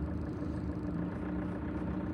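Steady low hum of a car engine heard from inside the cabin as the car creeps along at low speed, with a faint steady tone over it.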